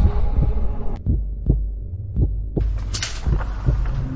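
Heartbeat sound effect in a dark intro soundtrack: short low thumps, roughly two a second, over a deep hum, with a brief hiss near the three-second mark.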